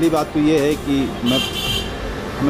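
A person speaking, with a brief high-pitched tone lasting about half a second, a little past the middle.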